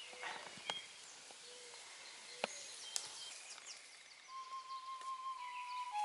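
Faint woodland ambience with birds chirping and a few light ticks. About four seconds in, a single held musical note, like a flute, comes in and holds, the start of background music.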